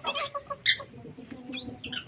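Short chirps from canaries: a few high calls that sweep down about one and a half seconds in, among several sharp clicks.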